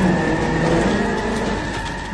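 Cartoon sound effect of a vehicle engine running with a dense rumble, loudest in the first half and easing off toward the end.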